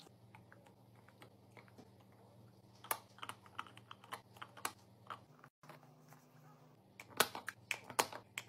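Small hard plastic clicks and taps as nipple-and-collar tops are set and screwed onto plastic Avent baby bottles: a few soft ticks at first, a cluster about three seconds in, and a quick run of louder clicks near the end. A faint steady low hum sits underneath.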